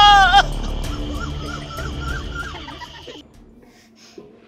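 A man's loud, wavering wail of grief, breaking off about half a second in, followed by quieter wavering cries over background music that fades out near the end.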